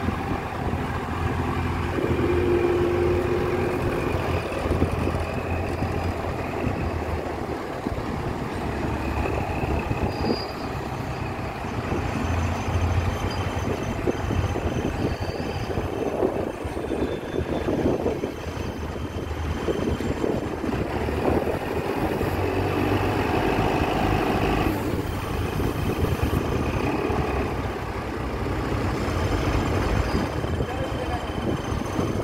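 Diesel engine of a JCB Loadall 535 telehandler running steadily throughout, its level swelling and dipping a little.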